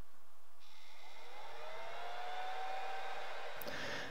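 A ToolkitRC M6D AC charger's internal cooling fan kicks in as the charger heats up under a 6 A charge. A hiss starts about half a second in, then a whine rises in pitch as the fan spins up and settles. It is not the quietest, but not dreadful.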